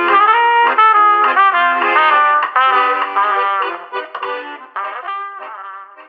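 Trumpet playing a melody, fading away over the last two seconds.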